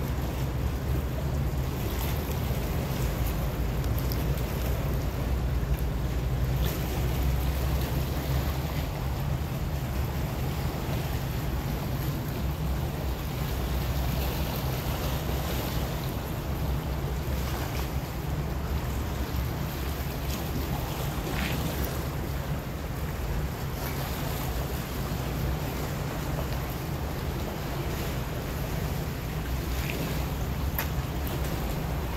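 A boat's engine running with a steady low drone, along with the wash of water and wind buffeting the microphone.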